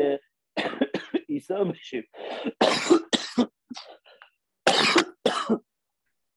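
A man coughing: two pairs of short, harsh coughs, the first pair about halfway through and the second near the end, after a little speech.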